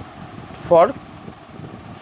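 A man's voice says a single word, with a steady background hiss in the pauses around it.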